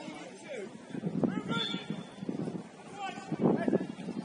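Footballers' shouts and calls on an open pitch, with two louder bursts of shouting, one near the middle and one near the end.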